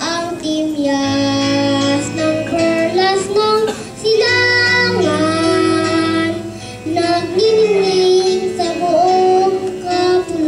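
A boy singing solo into a microphone over instrumental accompaniment, holding long notes with short breaks between phrases.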